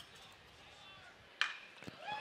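A metal baseball bat hitting a pitched ball once, a single sharp crack about one and a half seconds in, over a faint ballpark crowd murmur. The contact produces a ground ball.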